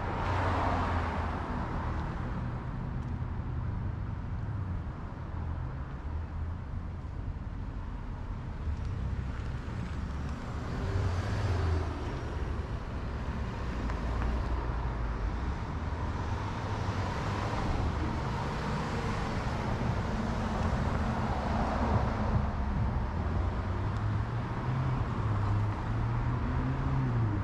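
Road traffic beside a highway: a steady low rumble, with several cars passing one after another, each swelling and fading.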